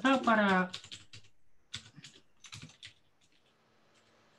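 Computer keyboard typing: quick keystrokes in three short runs, stopping about three seconds in.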